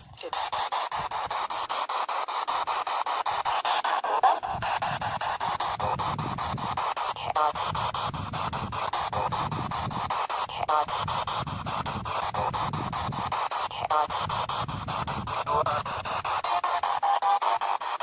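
Ghost-hunting spirit box sweeping rapidly through radio stations: a steady, choppy hiss of static broken every few seconds by brief snatches of voices and music.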